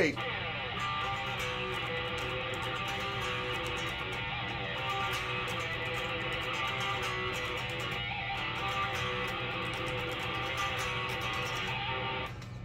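Distorted electric guitar playing a passage from a song, held notes and chords changing every second or so at a steady level.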